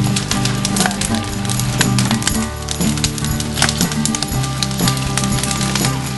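Background music with sustained low chords that change every second or two, with many sharp clicks scattered throughout.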